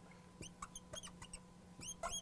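Felt-tip marker squeaking on a glass lightboard as numbers are written: faint runs of short, high chirps, a few at a time, about half a second in, around a second in and again near the end.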